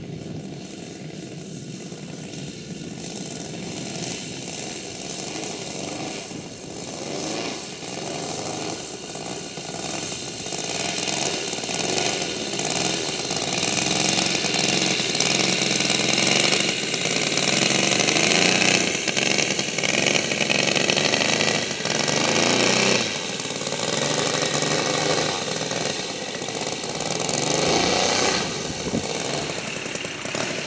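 Saito FG-90R3 three-cylinder four-stroke radial petrol engine on a large RC Focke-Wulf 190, running at low throttle while the plane taxis. Its pitch rises and falls with small throttle changes, and it grows louder as the plane comes closer.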